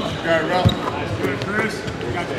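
A basketball bouncing on a hardwood gym floor during a workout drill, with one sharp bounce a little over half a second in, among voices calling across the gym.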